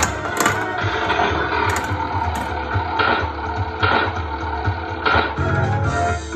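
Bally Who Dunnit pinball machine in play: its electronic game music runs with a heavy bass line. Sharp mechanical clacks from the flippers and the ball striking the playfield come at irregular moments, roughly once a second.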